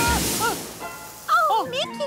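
Cartoon soundtrack: a hissing blast of the dragon's breath dies away at the start, over light background music. A character's short wordless vocal exclamation follows in the second half.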